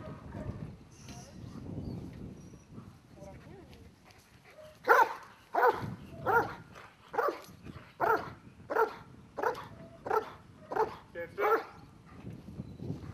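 Police service dog barking repeatedly, about ten sharp barks a little under a second apart, starting about five seconds in.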